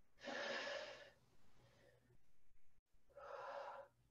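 A woman breathing hard while lifting a dumbbell in rows, two audible breaths each lasting under a second, about three seconds apart.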